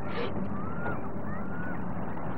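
A steady low engine rumble, with a short hiss just after the start and a few faint, high gliding cries over it.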